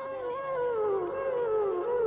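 Background score: a single flute-like melody line, held and then sliding down in pitch in small steps.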